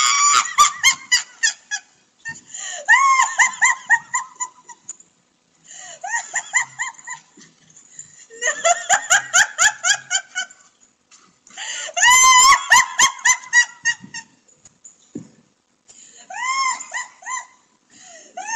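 A woman laughing hard in about six high-pitched fits, each a quick run of short hoots with breaks between them. The sound comes through a Ring security camera's microphone.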